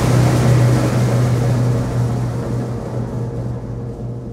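Timpani roll with the full symphonic band: a loud, sustained low rumble that dies away over the second half.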